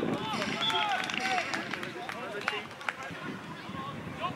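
Footballers and onlookers shouting short calls across an outdoor pitch, with two sharp knocks in the second half.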